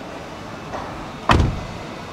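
A car door shut once with a single heavy thump, about one and a half seconds in.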